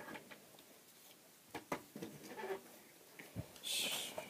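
Faint handling sounds of plastic dolls being moved and laid down: a few light taps and rustles, then a short hiss near the end.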